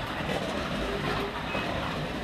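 Midget slot car running laps on the track: a steady whir from its small electric motor and the rattle of its pickup on the metal rails.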